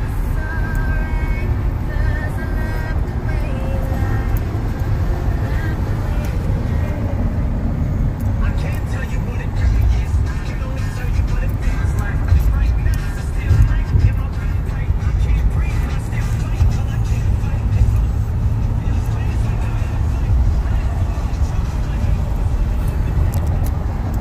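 Steady low rumble of road and engine noise heard from inside a car cabin while driving at freeway speed.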